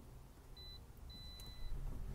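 Faint, high electronic beeps from a 2018 Toyota RAV4 Hybrid's dashboard as it is started with the push button: a short beep about half a second in, then a longer one just after a second. The hybrid powertrain runs very quietly, with no engine sound rising over the low background hum.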